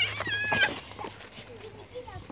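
A toddler's high-pitched squeal, held for about half a second, then only faint small vocal sounds.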